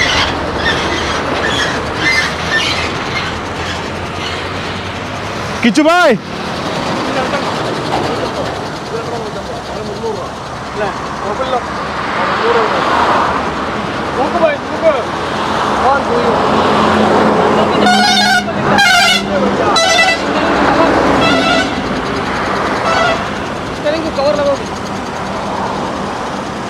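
Busy truck-yard background of voices, with a few short truck horn toots in a cluster about two-thirds of the way through. A loud, brief pitched sound that rises and falls comes about six seconds in.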